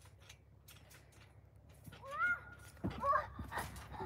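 A small child's short, high-pitched vocal sounds, twice: a rising-and-falling squeal about two seconds in, and another about a second later. A low thump from the trampoline comes with the second. The first two seconds are nearly silent.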